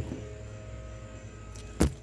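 A single sharp snap near the end as a pepper is picked off the plant, its stem breaking, over a faint steady low hum.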